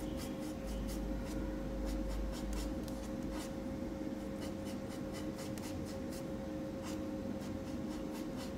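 Metal palette knife scraping and pressing sculpture paste against a hard work board: a run of short, irregular scrapes and light taps, over a steady low hum.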